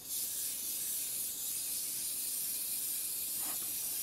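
A wind-up toy sound effect playing back from a stock-audio library: a steady high hiss that starts abruptly.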